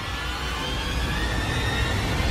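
Film soundtrack music: a low rumble under faint, slowly rising high sustained tones, with no beat.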